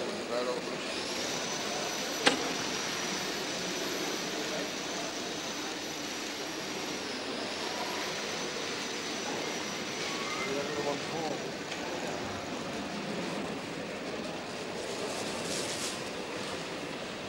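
Indistinct voices and general hubbub over a steady hiss, with a faint high-pitched whine throughout and a single sharp click about two seconds in.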